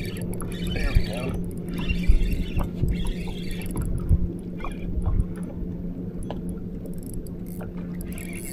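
Gusty low rumble of wind and water on an open boat deck, over a steady low hum, with scattered light clicks and knocks.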